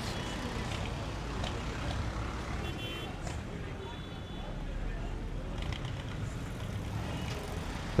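Outdoor street ambience: a steady wash of road traffic with indistinct voices, and a couple of brief faint high tones about three seconds in.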